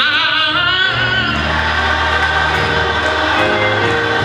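Gospel choir singing with organ and keyboard accompaniment; a high note with vibrato is held for about the first second over a sustained low bass.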